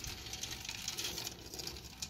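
Faint rustling with scattered light clicks: hands handling parts around the timing chain.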